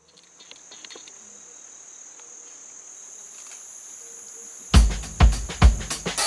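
Steady, high-pitched insect chorus of forest ambience. Near the end a drum kit comes in with heavy beats, about two a second, much louder than the insects.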